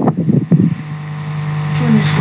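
A voice trails off in the first half-second, then a steady low hum fills the rest, slowly getting louder.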